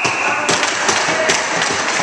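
Hockey sticks tapping and clacking on the ice: sharp, irregular taps several times a second over a steady noisy background. A steady high tone stops about half a second in.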